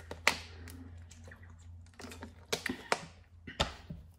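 Sharp clicks and taps of hands handling tarot cards and objects on a table. The loudest click comes about a quarter second in, and a cluster of quicker clicks follows in the last second and a half, over a low steady hum.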